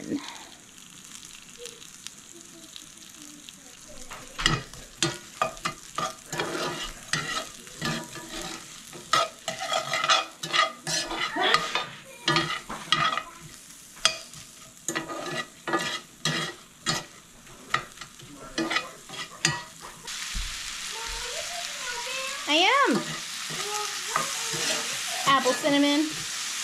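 Diced apples in butter and brown sugar sizzling in a cast iron skillet, while a metal spoon scrapes and clicks against the pan in quick, irregular stirring strokes from a few seconds in. The sizzle grows louder near the end.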